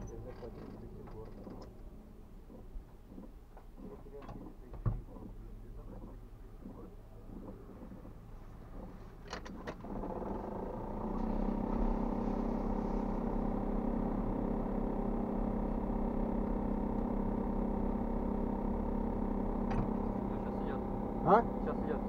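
A motor vehicle engine idling steadily; it comes in about ten seconds in, louder than the faint low rumble and occasional clicks before it.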